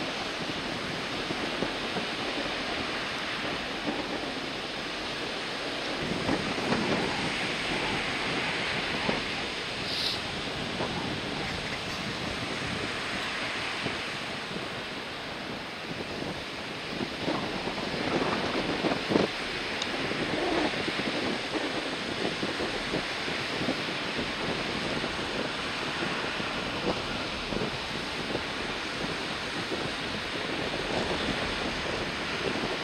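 Surf breaking steadily onto a sandy beach: a continuous wash of waves with a few louder crashes, and wind blowing across the shore.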